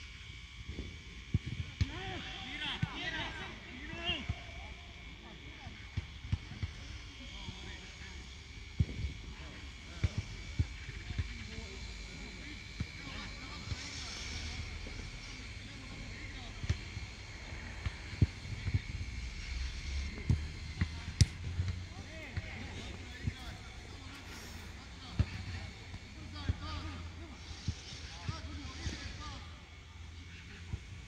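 Footballs being kicked on a grass pitch, frequent short sharp thuds scattered irregularly, with players' voices calling out across the field.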